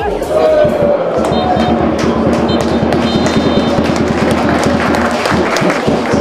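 Background music with a singing voice over a fast, dense beat.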